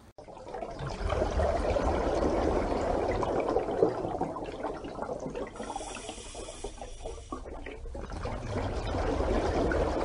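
A steady rush of water, with a brighter hiss joining from about five and a half to seven and a half seconds in.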